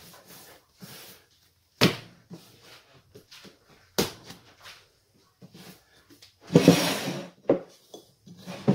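Yeast dough being kneaded by hand on a countertop: soft pressing and rubbing with two sharp smacks about two seconds apart. Near the end comes a longer, louder scraping handling noise as the dough goes into a glass bowl.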